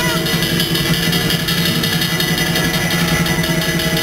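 Chinese ritual music of a Taoist ghost-festival ceremony: steady held tones over a dense, pulsing shimmer of percussion. A wavering high melody line fades out just after the start.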